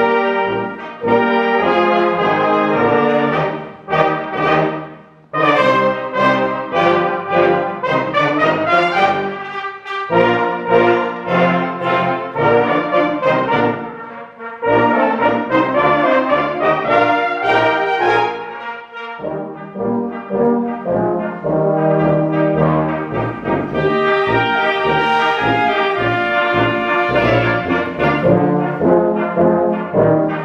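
A Swabian-style brass band (Blaskapelle) playing live: flugelhorns, tubas and other brass with E-flat clarinet, a rhythmic folk-dance or march piece. The music breaks off briefly about five seconds in, then goes on.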